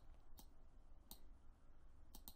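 Near silence with two faint computer mouse clicks, about half a second in and again just after one second.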